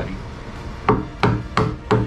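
Wooden mallet striking a chisel into English walnut, four sharp blows about three a second starting about a second in, chopping out the recess for a bowtie inlay.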